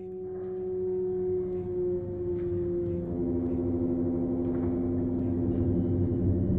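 Dark droning music: a sustained, ringing low chord of several held notes swells up from silence over the first second, and another low note joins about three seconds in.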